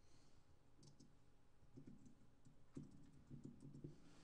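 Near silence: room tone with faint scattered small clicks and a few soft low knocks.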